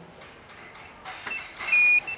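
Alarm control panel giving one short, loud, high beep near the end, the sign that it has picked up the water leak detector's signal while learning its code.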